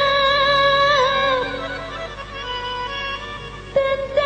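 Live dangdut band music. A held melody line with vibrato carries the first second and a half, the accompaniment goes quieter, and a strong new melodic line, likely the singer's voice, comes in near the end.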